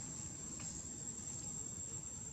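Steady high-pitched insect drone over a low background rumble.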